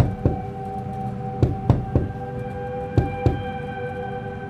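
Knocking on a car window, knocks mostly in twos about every second and a half, over a steady ambient music drone.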